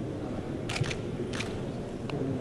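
Camera shutters clicking: a quick pair of clicks about two thirds of a second in and another click a little before a second and a half in, over steady low background noise.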